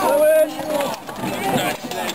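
Group of men's voices outdoors: a long, drawn-out shout in the first half second, then overlapping calls and chatter.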